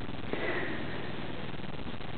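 Steady rushing noise of a running electric pedestal fan, with a short sniff about half a second in.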